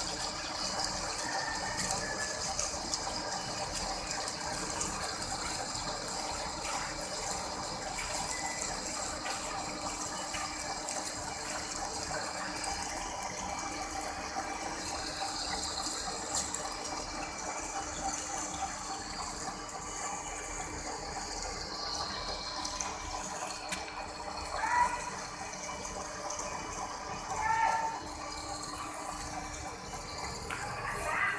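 Heavy-duty lathe turning a large steel cylinder with two tools cutting at once: a steady hiss of the cut with thin high whines running over it. Two brief louder sounds stand out near the end.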